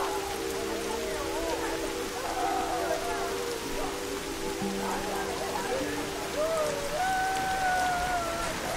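Steady rain falling, with low sustained music notes held underneath and faint wavering voices, one long drawn-out tone rising over the rest near the end.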